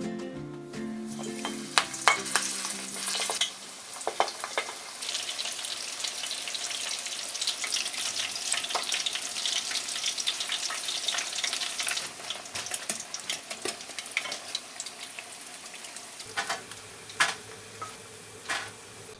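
Panko-breaded prawns deep-frying in hot oil: a dense crackling sizzle with frequent sharp pops, thinning to a few scattered pops near the end.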